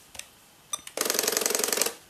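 Canon X-710 color plotter's ALPS mechanism running for about a second, a fast pulsing buzz from its stepper motors driving the pen and paper, then stopping abruptly. A couple of faint clicks come before it.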